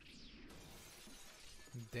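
Faint sound effect from the anime episode's soundtrack during a scene change: a quick falling sweep, then a spread of hissing, crackling noise lasting about a second, before a man's voice comes in near the end.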